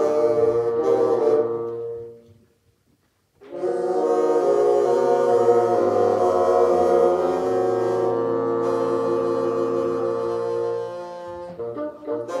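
Bassoon ensemble playing. A phrase ends about two seconds in, followed by a short rest, then a long held chord of several bassoons lasting about eight seconds, with new notes starting near the end.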